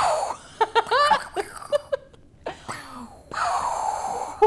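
Women laughing in short bursts and giggles, ending in a breathy hiss.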